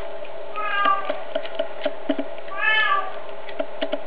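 A cat meows twice, a short falling call about half a second in and an arched one near three seconds, over repeated crunching clicks as it chews whole raw chicks, bones and all. A steady low hum runs underneath.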